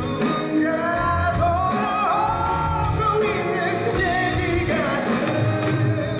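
Male lead vocalist singing live into a handheld microphone, with band accompaniment filling the hall.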